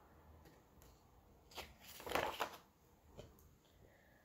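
Paper rustle of a softcover picture book's page being turned and the book handled, lasting about a second around the middle, followed by a faint tap.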